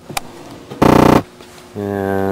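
A man's voice, wordless: a loud, short vocal sound about a second in, then a steady held low tone near the end.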